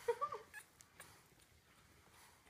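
A two-week-old French bulldog puppy gives one short, high, wavering squeak at the very start, followed by a few faint clicks.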